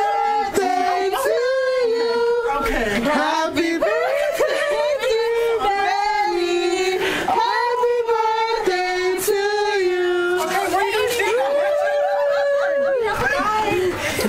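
A voice singing a melody with long held notes.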